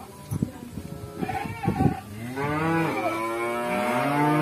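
A cow mooing: long, drawn-out calls that begin about halfway through, one running into the next, after a few short knocks in the first half.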